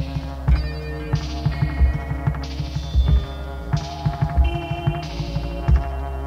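Minimal synth music from a 1980s home-taped cassette: a steady electronic kick beat under sustained synth tones that shift in pitch. A bright, hissing noise burst recurs every second or so.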